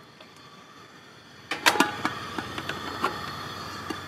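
Metal clanks, about a second and a half in, as an Omnia stovetop oven pan is set down onto its preheated base on a camp stove, followed by the steady hiss of the gas burner running on high.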